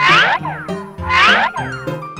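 Children's background music with two added cartoon sound effects, each a quick cluster of sweeping pitch glides, the second coming just over a second after the first.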